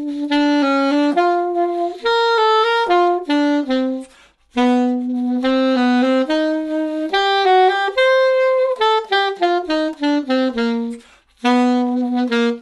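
Alto saxophone playing a lively melody of short, separated notes in triplet rhythms, in phrases broken by brief pauses for breath.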